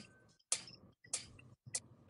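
Four sharp clicks, evenly spaced a little over half a second apart, with near silence between them.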